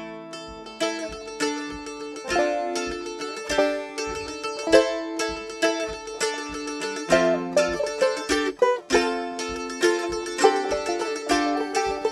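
Banjo and mandolin playing a folk tune together in a steady rhythm of plucked notes and strums, with no singing yet.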